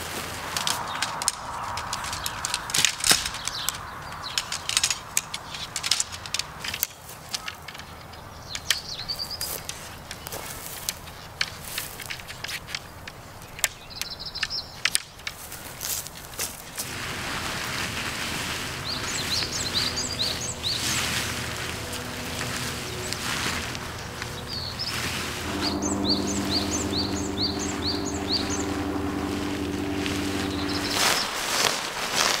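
Camping gear handled on the ground: rustling fabric and bags, with many small clicks and knocks. Birds chirp throughout, including quick trilled series near the end. Soft sustained tones come in about halfway and change chord near the end.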